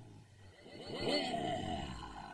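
Distorted, voice-like roar in a recording presented as a shortwave radio transmission: one drawn-out sound whose pitch arches up and back down, swelling to its loudest about a second in and fading near the end.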